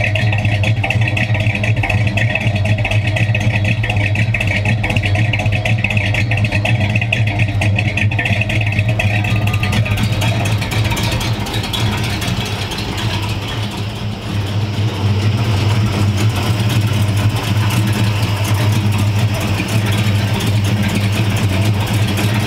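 1970 Dodge Charger's 440 big-block V8 idling steadily with a deep, even note.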